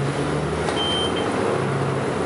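Cabin noise inside a moving SUNWIN city bus: the engine's steady low drone over road and body noise, with a brief high tone about a second in.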